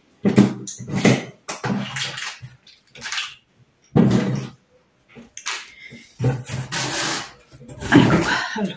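Paper catalogues and packaging being pulled out of a cardboard box and handled: a run of short, irregular rustles and bumps, with a longer stretch of paper rustling near the end.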